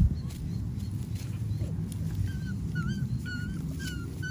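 Doberman puppies whimpering: a quick run of short, high squeaks, about three a second, starting halfway through. Underneath is a steady low rumble of breeze on the microphone, with a bump at the very start.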